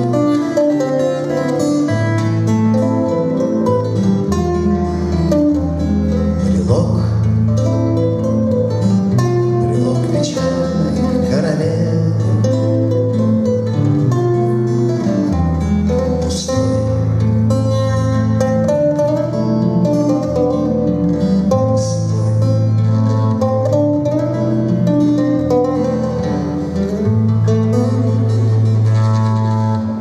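Two acoustic guitars, one a classical guitar, playing a chord-based accompaniment together with a moving bass line.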